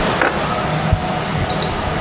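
Steady background hiss, with a soft knock about a second in and a few faint high chirps.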